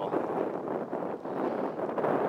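Wind buffeting the microphone in a steady rush, over the noise of choppy river water.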